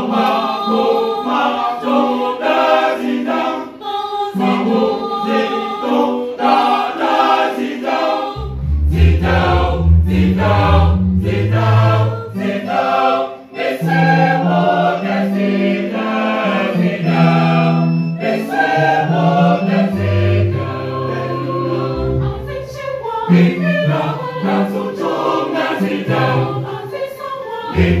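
Mixed choir singing a gospel song with electronic keyboard accompaniment. A deep bass line comes in about eight seconds in and carries on under the voices.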